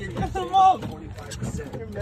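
Excited shouting and laughing from a group of people cheering on a fish being reeled in on a boat, with a loud high shout about half a second in. Wind buffets the microphone underneath.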